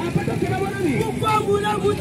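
A man's voice, amplified through a microphone and loudspeaker, singing or chanting a held, gliding melodic line with no clear words.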